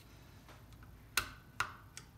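Two sharp clicks, about 1.2 and 1.6 seconds in, with a fainter one near the end, from the overspeed trip adjustment of a TG611 turbine governor being worked by hand.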